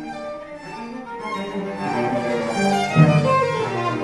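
Violin and cello playing a classical chamber duo, both bowed. A strong low cello note comes in about three seconds in.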